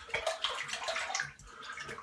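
Water splashing from a running tap at a sink as a razor is rinsed between strokes of a head shave. It comes in irregular splashes that die down about halfway through.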